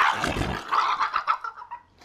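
Sound effects made with a human voice by a mimic: a loud, noisy burst fades out about half a second in, then a thin, wavering whine like a dog's trails off.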